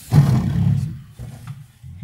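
A chair scraping on the floor as someone gets up from a table: a loud, rough, low scrape in the first second, then a few shorter, quieter scuffs and knocks.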